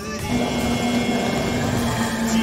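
Racing boats' two-stroke outboard motors running together in a steady drone, with a held tone coming in a fraction of a second in, over background music.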